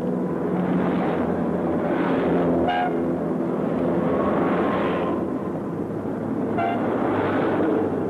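Busy street traffic: cars driving past close by, the noise swelling and fading as each one goes by. A short car-horn toot sounds about three seconds in, and another comes a few seconds later.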